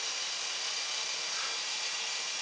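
Air Hogs Fly Crane toy helicopter's small electric motors and rotors running with a steady high whir while the helicopter stays on the ground. It is not lifting off even on a freshly charged replacement LiPo battery, and the owner's next guess is a problem with the motors.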